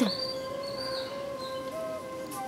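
Background drama score: sustained held notes with a few short notes stepping between fixed pitches above them.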